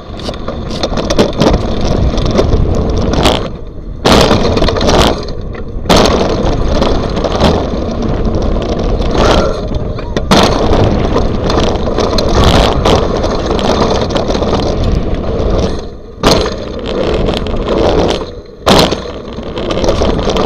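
Mountain bike riding a dirt trail, heard from a handlebar-mounted camera: a steady loud rumble of wind on the microphone and tyres on dirt, with rattling and knocks from the bike over bumps. Several times the noise dips briefly and comes back with a sudden loud jolt.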